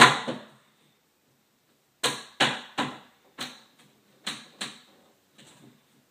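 A spirit level set down on a wooden wall rack with a sharp knock, then a run of about eight sharp wooden knocks a few tenths of a second apart as the rack, hanging on one screw, is tapped into level.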